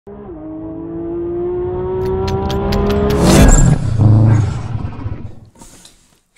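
Car engine revving up, its pitch climbing slowly over about three seconds with sharp pops, then peaking in a loud burst about three seconds in and a second one a moment later before fading out.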